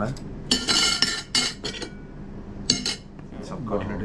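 Tableware clattering: a quick run of short clinks and rattles between about half a second and a second and a half in, and one more clink near three seconds.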